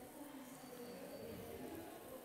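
Faint sizzle and scrape of diced pata negra ham and pork belly being stirred with a spatula in a dry frying pan, over low background murmur.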